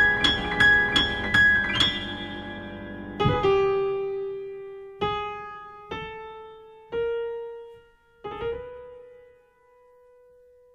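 Piano in a show-tune instrumental passage. A run of quick repeated notes fades out, then five single notes are struck about a second apart, each left to ring and die away. The music stops near the end.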